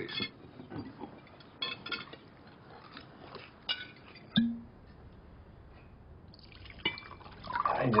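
Scattered light clinks and taps of glasses, plates and cutlery at a dinner table, with one sharper clink about four seconds in. Near the end, liquid being poured into a glass.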